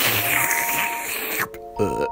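A long, noisy slurp as a cartoon character sips from a drink can, lasting about a second and a half over quiet background music.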